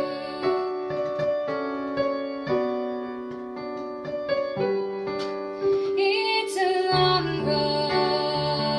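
A woman singing a slow pop ballad to her own accompaniment on an electronic keyboard with a piano sound. Sustained chords carry it, and her voice comes in most clearly about six seconds in.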